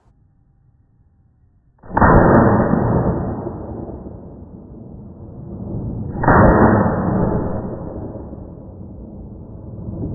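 Two deep, dull booms about four seconds apart, each starting suddenly and dying away slowly over a couple of seconds, with no treble; the second is preceded by a rising swell.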